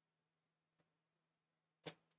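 Near silence with a faint steady hum and two soft clicks, one just under a second in and a slightly stronger one near the end.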